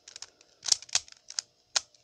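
3x3 Rubik's cube being turned by hand: several sharp plastic clicks as its layers snap round, spaced irregularly.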